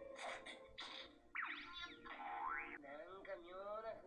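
Faint anime episode audio: characters' voices and a cartoon sound effect whose pitch sweeps up and down about a second and a half in.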